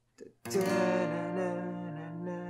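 Steel-string acoustic guitar strummed on a B-flat major barre chord. It comes in sharply about half a second in and rings on, slowly fading.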